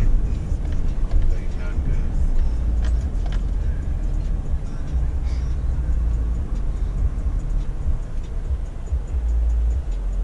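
Car cabin road noise while driving: a steady low rumble of engine and tyres heard from inside the vehicle, with a few faint clicks.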